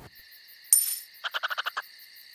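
Night-time forest ambience with a steady high insect drone. A short rustle comes about a third of the way in, then a quick run of about ten small clicks.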